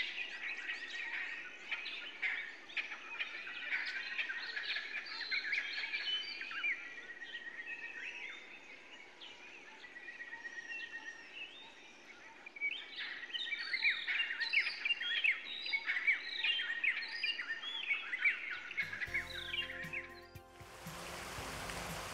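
A chorus of wild birds calling and singing in bushveld: many quick chirps and whistles, with one bird repeating a drawn-out whistled note. Near the end the birdsong gives way to a steady hiss.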